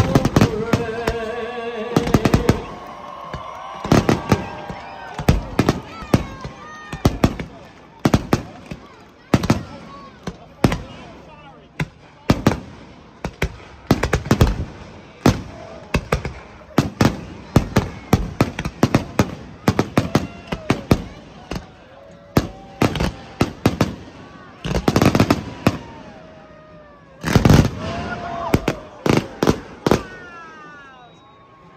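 Aerial firework shells bursting in rapid succession: a dense barrage of sharp reports, several each second, with heavier clusters of bangs near the end.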